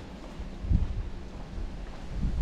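Wind buffeting the microphone in low, uneven rumbles, with a stronger gust about three quarters of a second in.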